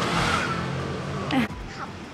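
A motor vehicle passing by, its noise swelling at the start and fading away over about a second and a half, with a short sharp sound near the end.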